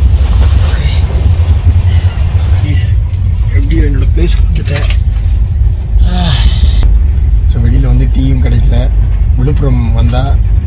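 Steady low rumble of a moving passenger train, heard from inside a sleeper coach, with a man's voice talking over it from about three and a half seconds in.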